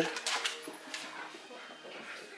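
A German shepherd whining faintly, a few soft wavering tones.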